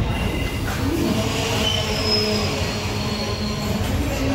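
A train moving through the station with a steady low rumble, its wheels giving brief high squeals on the rails.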